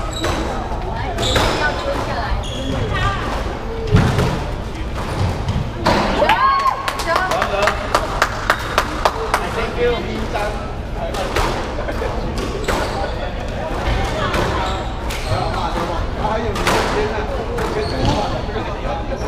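Squash ball being struck by rackets and knocking off the court walls and wooden floor, a series of sharp knocks with a quick run of repeated knocks a few seconds in. A short squeak of shoes on the wooden floor about six seconds in.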